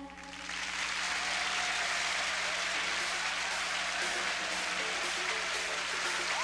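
Theatre audience applauding as a song ends: the last sung note stops at the start, and the clapping builds within about half a second into a steady, dense applause.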